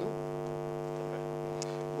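Steady electrical hum with a stack of overtones, unchanging in pitch and level, carried in the recording during a pause in speech.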